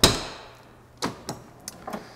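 Metal compartment door and latch on an ambulance body being handled: a loud metallic clunk with a short ring at the start, then a second knock about a second in and a few lighter clicks.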